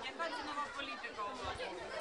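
Faint, indistinct background chatter of several voices, with no single clear speaker.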